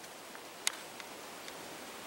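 Faint steady outdoor background hiss with one sharp click a little over half a second in and a few fainter ticks around it.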